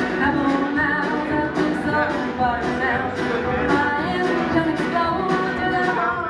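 Live country-folk band music: strummed acoustic guitars, banjo, upright bass and drums playing together, with a melodic lead line wandering over them.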